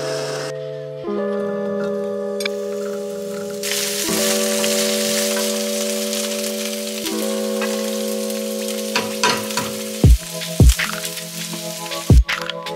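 Food sizzling as it fries in a skillet on a gas burner, stirred with a wooden spatula. The sizzle sets in a few seconds in and fades toward the end. Soft background music with slow sustained chords plays throughout, and a couple of deep thumps come near the end.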